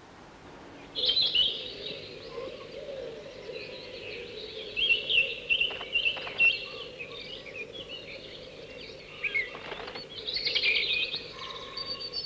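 Chickadees chirping and twittering in quick high notes, starting about a second in and going on in busy runs, over a faint steady hum.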